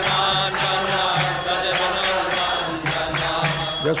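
Devotional kirtan music: small brass hand cymbals (karatalas) strike a steady, even beat under held chanted notes.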